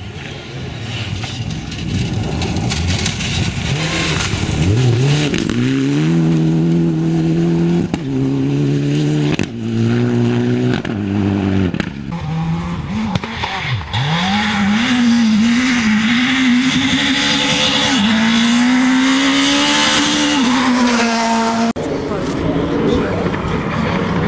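Mitsubishi Lancer Evolution IX rally car's turbocharged four-cylinder engine accelerating hard, revs climbing and breaking off at quick upshifts through several gears. The engine note then rises and falls as the car drives on.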